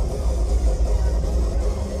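Open-air festival sound system playing hardstyle: the heavy pounding bass stops right at the start, leaving a lower steady rumble with some sustained tones.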